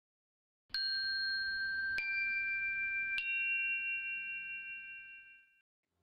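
Three bell-like chime notes struck about a second apart, each higher than the last, ringing on together and fading away over the last couple of seconds.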